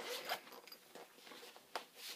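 A zipper being pulled in short rasping strokes: one in the first moments and a brief one near the end, with faint handling noise between.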